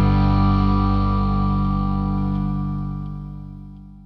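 A final sustained chord on distorted electric guitar, with bass underneath, ringing out and slowly fading away at the end of a blues-rock song.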